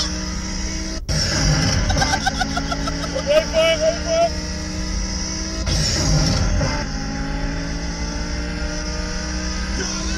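Mazda 323's engine running at a steady speed, heard from inside the car. About six seconds in there is a brief hissing whoosh.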